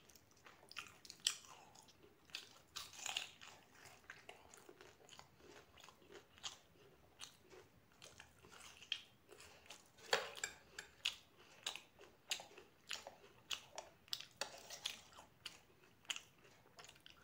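Close-miked chewing and mouth sounds of a person eating chole with puri: wet smacks and sharp clicks at an irregular pace, the loudest about ten seconds in.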